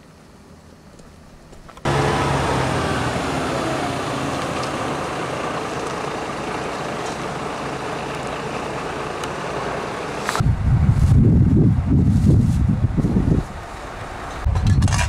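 Heavy MAN recovery truck's diesel engine running as the truck drives up, cutting in suddenly about two seconds in, its note sinking slightly. Near the end it gives way to an uneven low rumble that rises and falls.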